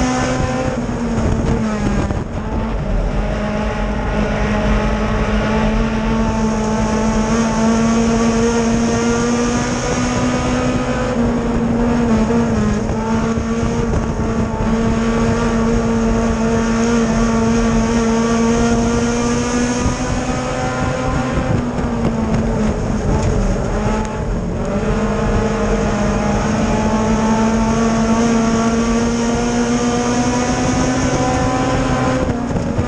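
Dirt late model race car's V8 engine running hard at high revs, heard from inside the car. The pitch holds steady down the straights and dips briefly as the driver lifts for a turn, about every ten seconds, then climbs back up.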